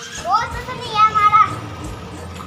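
A young child's high-pitched wordless calls, twice: a short rising squeal, then a longer held one.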